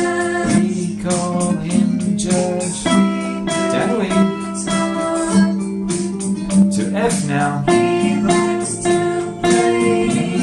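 Nylon-string classical guitar picking a line of repeated single F notes over a backing track of music.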